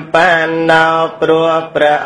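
A Buddhist monk chanting Pali verses in a male voice, holding each drawn-out syllable on one steady pitch.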